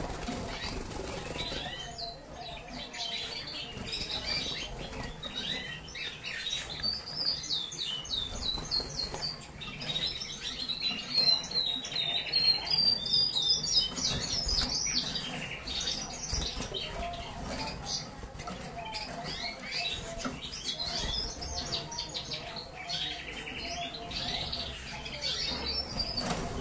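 Agate red mosaic canary singing: a long run of rapid, high warbles and trills, loudest around the middle.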